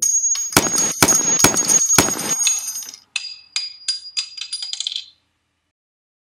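Gunshot sound effect: about five sharp shots with a ringing tail in the first two seconds, then the light metallic tinkling of spent brass casings dropping and bouncing, which stops about five seconds in.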